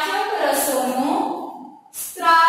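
A woman's voice speaking, lecturing, with a brief pause near the end.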